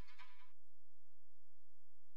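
Quiet stretch of a makina track: a buzzy, bleating synth stab, the last of a series repeating about every 0.7 seconds, stops about half a second in, leaving only a soft low beat pulsing about three times a second.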